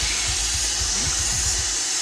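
A steady high hiss with a few soft low thumps, without voices.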